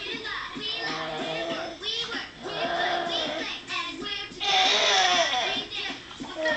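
A children's song playing, with children's voices singing over music; about four and a half seconds in there is a louder, noisier passage lasting about a second.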